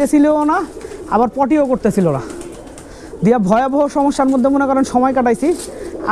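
A man talking over domestic pigeons cooing in their lofts.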